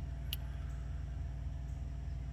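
Steady low rumble of background noise, with one faint brief click about a third of a second in.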